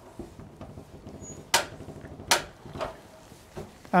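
Two sharp metallic clicks about three-quarters of a second apart, then a couple of fainter knocks: the log lifters of a Logosol portable sawmill being stepped up by their click increments to set the thickness of the next cut.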